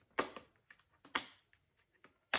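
Fingers and fingernails picking at a tightly sealed cardboard makeup palette box, making two sharp snaps about a second apart with fainter ticks between.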